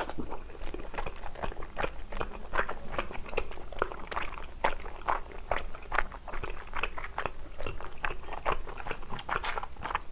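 Close-miked chewing of spicy tteokbokki (rice cakes in sauce): a steady run of wet mouth clicks and smacks.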